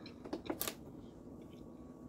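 A few short clicks of someone taking a bite of soup, about half a second in.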